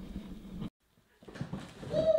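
A dog whining near the end: one drawn-out note that falls slightly in pitch.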